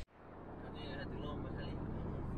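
Steady road and engine noise heard from inside a car cruising on a highway, fading in over the first half second.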